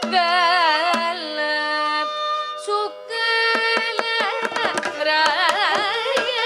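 Carnatic concert music: a woman sings a melody full of sliding, shaking ornaments, shadowed by violin over a tanpura drone. The percussion is sparse at first, and from about halfway through the mridangam and ghatam come in with dense, quick strokes.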